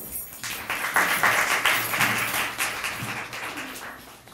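Audience applauding: the clapping starts about half a second in, is loudest in the first half and thins out near the end.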